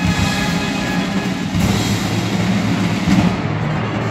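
Military-style show band playing live: a held brass chord fades over the first second or so, leaving snare drums, timpani and a drum kit playing on.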